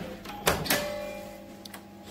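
Two sharp knocks about a fifth of a second apart, half a second in, followed by a clear ringing tone that fades away over about a second, over a faint steady low hum.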